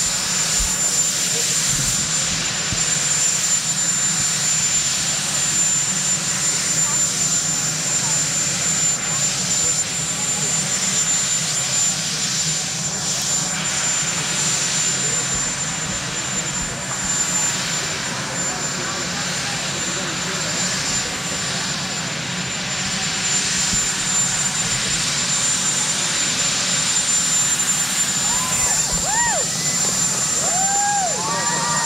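Marine One helicopter's turbine engines running steadily on the lawn, a constant noise with a steady high whine, under the chatter of a waiting crowd. Near the end, a few voices in the crowd rise in excited calls.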